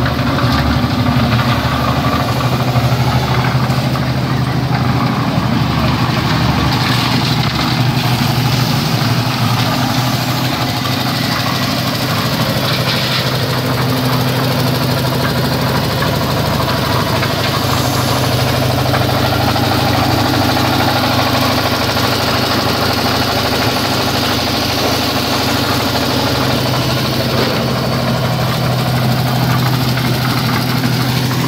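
Portable drum concrete mixer's small engine running steadily at a constant pace.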